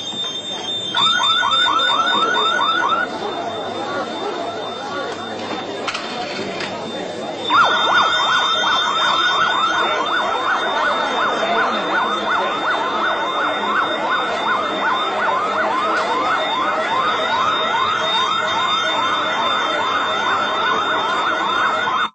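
Electronic alarm sounding in rapid falling whoops, about four or five a second. It gives a short spell near the start, then sounds without a break from about a third of the way in, over a steady high tone. It is treated as a malfunction ("un guasto").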